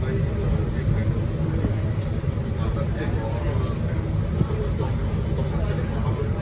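Diesel engine of a MAN NL323F A22 (Euro 6) single-deck bus idling with a steady low rumble, heard from inside the cabin while the bus stands still.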